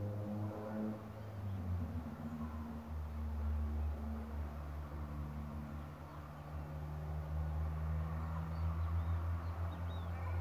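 A low, steady droning hum runs throughout, with a few faint high chirps near the end.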